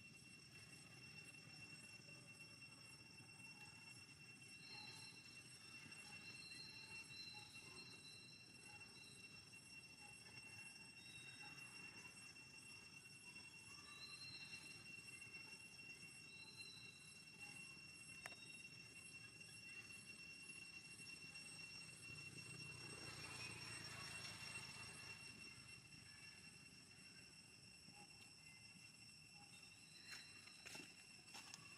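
Near silence: faint outdoor ambience with a steady high-pitched tone, a few short high chirps in the first half, and a brief swell of soft noise about 23 seconds in.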